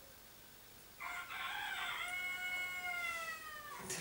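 A rooster crowing once: a rough start, then a long held call that sags slightly in pitch before breaking off.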